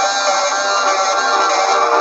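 Live electric guitars playing held, droning notes in a wall of noise-rock sound, with no clear drumbeat standing out.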